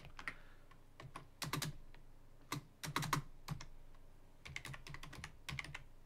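Typing on a computer keyboard: irregular key clicks coming in short runs with brief pauses between them.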